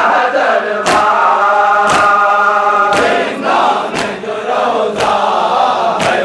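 A crowd of men chant a Shia mourning noha together, while a sharp, unison chest-beating (matam) slap of hands on chests lands about once a second.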